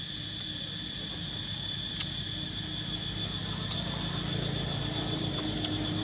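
Steady, shrill chorus of insects, with a low hum growing louder in the second half and a sharp click about two seconds in.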